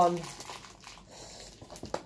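Faint crinkling of a paper and plastic snack packet being handled, with a small click near the end.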